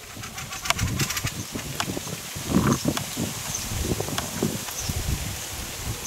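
Fieldfares giving harsh, clicking chatter calls near their nest, most of them in the first two seconds. Under them run irregular low thumps and rustling from footsteps through mown grass.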